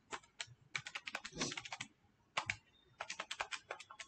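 Quick runs of light clicks from calculator keys being pressed, punching in a multiplication: a dense run in the first half, a short pause, then another run near the end.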